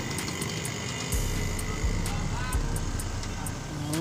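Parked coach buses idling, a steady low engine hum, with faint voices in the background and a faint regular ticking about three times a second.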